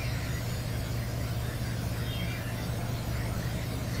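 Steady low electrical hum with faint hiss: the background noise of the recording's microphone line.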